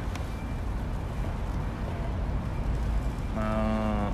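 Steady low outdoor rumble on a phone microphone, with a single short, steady hum near the end.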